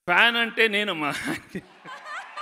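A man exclaims "wow!" into a microphone with a chuckle. The crowd starts to whoop and cheer near the end.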